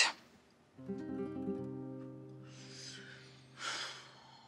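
Background score: an acoustic guitar chord is strummed about a second in and slowly rings out.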